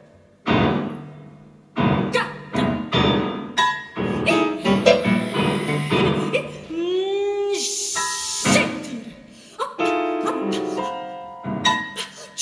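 Grand piano playing contemporary concert music in separated, sharply struck notes and chords that ring and decay, with pauses between them. A bending, gliding tone sounds about seven seconds in, followed by a brief hissing burst.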